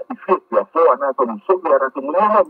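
Only speech: a man talking steadily to the camera.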